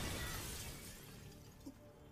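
Shattered glass and debris settling after a crash, a noisy crumbling that fades away over about two seconds.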